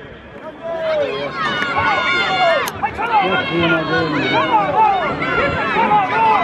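A crowd of men calling out and shouting at once, many voices overlapping. The voices swell about a second in and stay loud.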